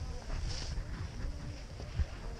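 Wind buffeting the microphone on an open chairlift in a snowstorm, a ragged low rumble, with faint voices in the background.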